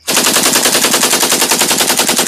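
Automatic gunfire sound effect: a loud, even burst of rapid shots at about ten a second, starting abruptly.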